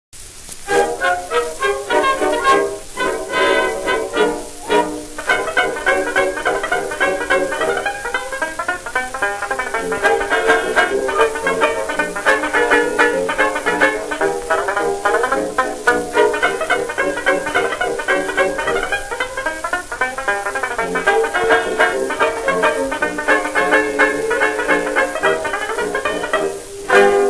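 Banjo solo backed by a small dance orchestra playing a 1922 ragtime novelty tune, heard from a 78 rpm record transfer with faint surface hiss.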